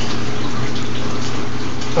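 Steady rushing of water circulating through a home aquaponics system, with a low steady hum underneath.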